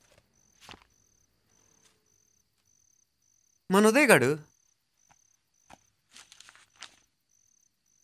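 A cricket chirping steadily, a thin high pulse about twice a second. A brief spoken phrase comes about halfway through and is the loudest sound. Soft rustles of a paper card being handled come early and again near the end.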